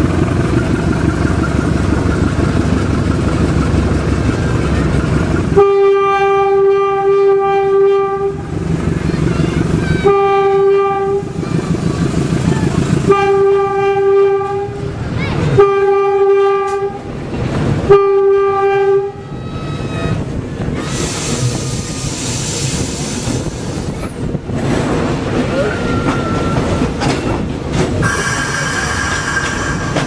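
GE U15C diesel locomotive heard from its cab: the engine running, then five blasts of the horn on one steady pitch, the first long and the next four shorter. After the horn the engine and wheel clatter on the track carry on.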